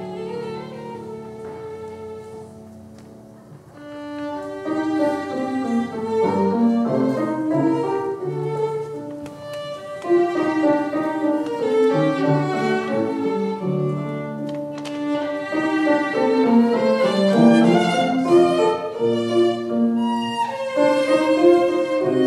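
Violin played with grand piano accompaniment: a bowed melody over piano chords. The music starts softly and fades to a hush about three seconds in, then picks up again and grows louder from about ten seconds in.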